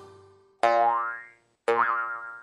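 Two cartoon boing sound effects about a second apart, each starting suddenly with a rising pitch glide and dying away in under a second.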